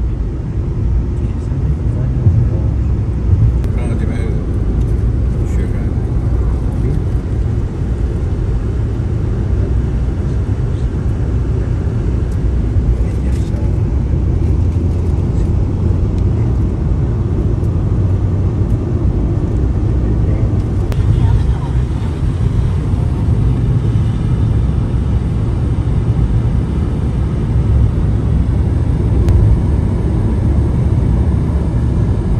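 A car cruising on an open road, heard from inside the cabin: a steady low rumble of tyre and engine noise.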